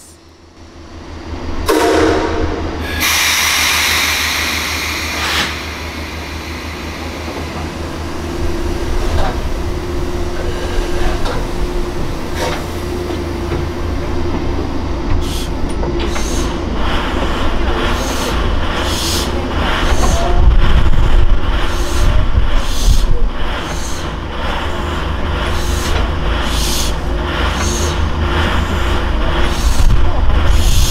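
Steam locomotive 49671 (JNR Class 9600) moving forward under compressed air instead of steam. A loud blast of hissing air comes a few seconds in, then a steady low running sound, and from about halfway on rhythmic exhaust puffs, a little more than one a second.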